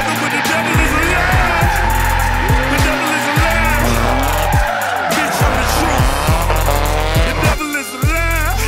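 Hip-hop beat with a deep bass that drops in pitch on each hit, mixed with a turbocharged Nissan S13 'Sil80' drift car sliding through corners with its tyres squealing.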